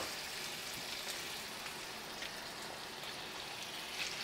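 Diced bacon and onions frying in a cast-iron skillet, giving a steady, even sizzle.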